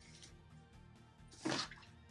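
Faint background music, with a short swish of a polyester football jersey being handled and laid flat on a table about one and a half seconds in.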